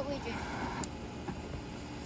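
A short hiss lasting about half a second, ending in a sharp click, as a smoke bomb catches in a brick fire pit and starts to smoke. A steady low rumble runs underneath.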